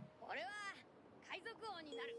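Two short, high, wavering meow-like calls about a second apart, heard after the background music cuts out.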